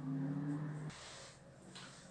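A woman's short, steady closed-mouth hum, just under a second long, that stops abruptly.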